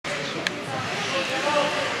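Indistinct voices of people in an ice hockey rink, with one short sharp click about half a second in.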